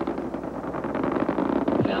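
Space Shuttle launch noise from the solid rocket boosters and main engines during ascent: a dense, continuous crackling rumble.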